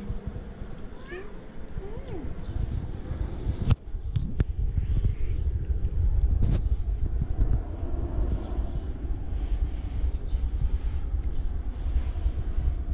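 Domestic cat meowing twice, two short rising-and-falling calls about one and two seconds in. After that a low rumbling noise, louder than the meows, runs on with two sharp clicks around four seconds in.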